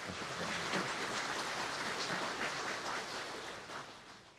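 Large seated audience applauding, a steady crowd clapping that dies away near the end.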